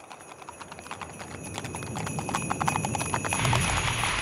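Horse hooves clip-clopping, getting steadily louder as if drawing near, with bells ringing steadily above them, like a horse-drawn sleigh sound effect.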